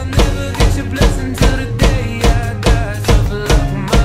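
Drum kit played live in a steady groove, the bass drum landing about twice a second with snare and cymbals, over a pop backing track with melody.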